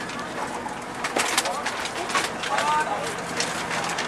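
A scattered run of short, sharp clicks and knocks from people getting off a minibus, with brief snatches of voices.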